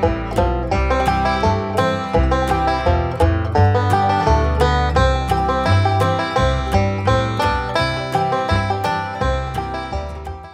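Bluegrass instrumental music led by a fast-picked banjo rolling out a continuous stream of plucked notes, with low bass notes underneath.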